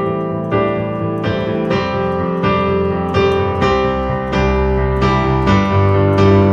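Digital stage piano with a piano sound playing a groovy, rock-style accompaniment. Chords are struck in a steady rhythm, about two to three a second, and a heavier bass line comes in about halfway through.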